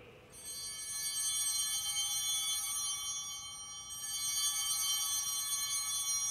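Altar bells ringing at the elevation of the host, with a shimmer of many high ringing tones. The ringing starts about a third of a second in, fades a little, and swells again about four seconds in.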